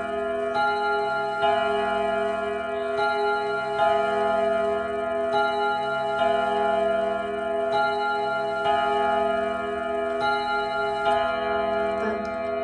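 ODO 36/10 French wall clock chiming its melody, hammers striking its set of tuned gong rods. A new note is struck about every second and each one rings on under the next, in an uneven tune-like rhythm.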